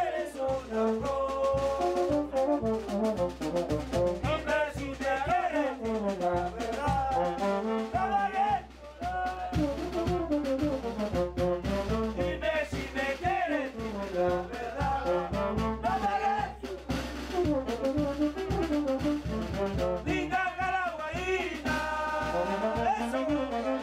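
A small street brass band playing a lively dance tune: a brass melody and tuba bass line over a steady bass-drum-and-cymbal beat.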